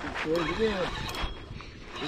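A voice speaking a few indistinct words, with a couple of faint clicks.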